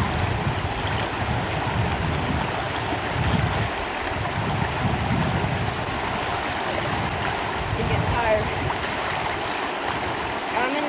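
Fast-flowing river rushing steadily, with wind buffeting the microphone in uneven low gusts.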